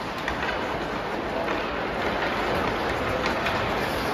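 Ice hockey play: a steady wash of skate blades scraping and carving the ice, with a few faint clicks of sticks and puck.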